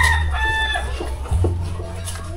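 A rooster crowing, its long held call trailing off within the first second, over a steady low hum.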